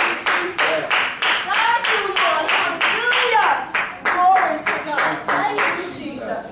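A congregation clapping steadily in time, about three claps a second, with voices calling out over it. The clapping stops near the end.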